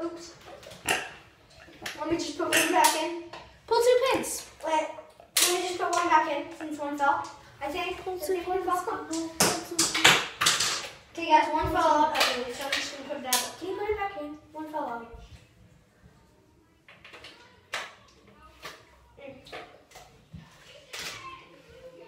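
Children's voices talking and exclaiming in a small tiled room, then a quieter stretch with a few short, sharp clicks near the end.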